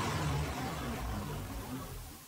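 Tail of a whoosh sound effect for an animated title: a wide noisy rush over a low rumble, fading away steadily.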